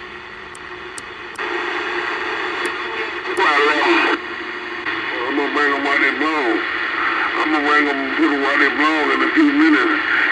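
Vintage EF Johnson Messenger 123 CB radio receiving on its speaker: AM static comes up about a second and a half in, then mumbled, hard-to-follow voices of other CB operators come through from about three seconds on. A few light clicks sound in the first few seconds.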